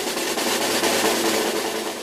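Snare drum roll sound effect, a steady rapid rattle that tapers off near the end: the build-up before a number is revealed.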